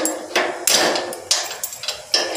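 Metal padlock being handled on a door's steel bolt and hasp: a run of about five sharp metallic knocks and rattles as the lock and its shackle strike the fittings of a wooden door.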